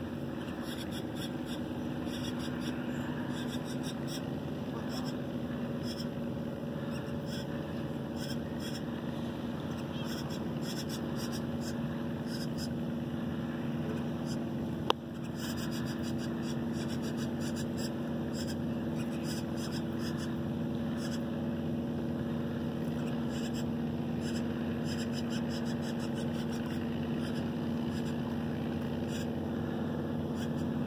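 A steady engine hum at a constant pitch, with one sharp click about halfway through.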